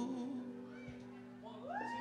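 A live acoustic band's held note dying away into a lull, then a high voice-like call that rises in pitch and holds, starting about a second and a half in.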